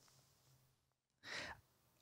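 Near silence: room tone, with one short, faint breath into a handheld microphone about a second and a half in.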